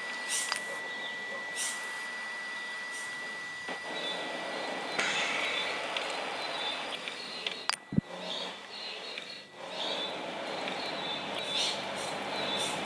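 A steady high-pitched electronic tone held over a hiss of background noise, stopping about nine seconds in, with two sharp clicks shortly before it ends.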